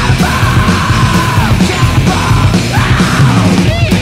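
Loud heavy rock song with a full band playing and a long held, yelled vocal note in the first second and a half, then a shorter one near the three-second mark.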